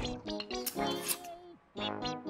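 Cartoon background music with a character's wordless vocal sounds over it. Both drop out briefly near the end, then come back.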